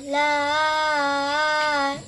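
A boy's voice chanting Quran recitation (tajweed), holding one long, nearly steady note on a drawn-out vowel for almost two seconds.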